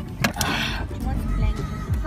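Voices with background music inside a car, over a steady low rumble. Two sharp clicks come at the start, and a brief rustle about half a second in.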